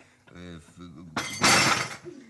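A few words of a man's speech, then a sudden loud crash, like something shattering, lasting under a second, starting just past halfway through.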